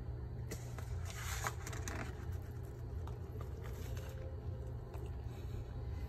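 Faint, irregular soft handling and eating noises as a bread sandwich is picked up and eaten, over a steady low hum.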